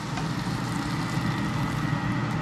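Steady hiss of fish frying in a pan of hot oil, over a low, even hum.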